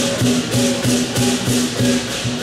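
Southern lion dance percussion: the lion drum beating with crashing cymbals and a gong in a steady rhythm of about three strokes a second.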